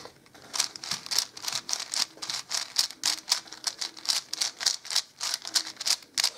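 Plastic layers of a 5x5 speed cube being turned by hand, a quick, uneven run of clicks and clacks, about three or four a second, starting about half a second in.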